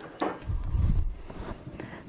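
Handling noise as a cane proofing basket (banneton) holding the dough is lifted off the counter: a sharp click, then a dull low thud about half a second in.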